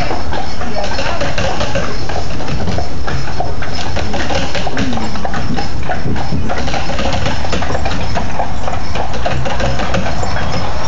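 Horse's hooves clip-clopping as a carriage rolls along, over a steady low rumble.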